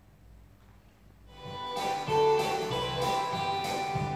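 Near quiet for about a second, then recorded dance music fades in and plays with a steady beat.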